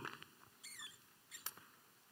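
Near silence: room tone with a faint brief high squeak a little over half a second in and a soft click about halfway through.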